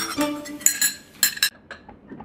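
Light clinks of glass and cutlery, in two short clusters about half a second and a second and a quarter in, each ringing briefly, over faint background music.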